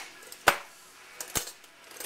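Two sharp clicks of kitchen utensils about a second apart, the first louder.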